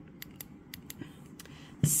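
Several faint, sharp small clicks in the first second, with a low thump just before the end; a woman's voice begins at the very end.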